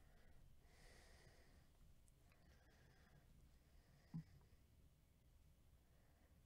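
Near silence: faint room tone, with faint breathy hiss and one brief soft low sound about four seconds in.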